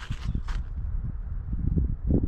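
Wind buffeting the microphone: irregular low rumbling and thumping, with a brief breathy rush about half a second in.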